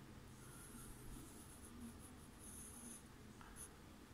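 Pencil scratching across drawing paper while sketching: faint, in a few separate strokes.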